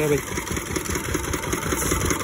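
Engine running steadily with a fast, even chug.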